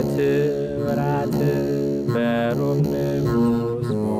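Begena, the large Ethiopian Orthodox lyre, being plucked while a man sings a slow chant over it in long held notes.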